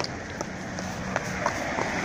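Quick footsteps on a paved pavement, about three light steps a second, over steady street background noise.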